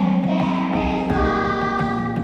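Choir singing held chords with instrumental and drum accompaniment, with a loud drum hit right at the start.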